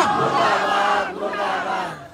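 A large crowd of political supporters shouting together in a long held shout that trails off near the end.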